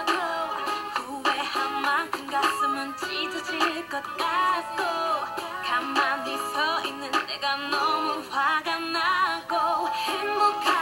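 A K-pop R&B ballad playing, with a woman singing a wavering, ornamented melody over the backing track.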